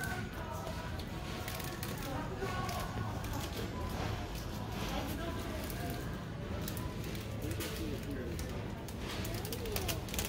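Supermarket shop-floor ambience: faint, indistinct chatter of other shoppers over a steady low hum, with scattered light clicks.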